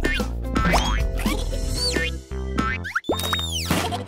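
Cartoon background music with several boing-like sound effects that swoop up and back down in pitch, the longest near the end.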